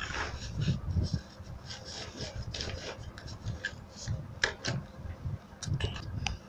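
Fabric being handled and slid across a sewing table: irregular rubbing and scraping with scattered light clicks and soft thumps.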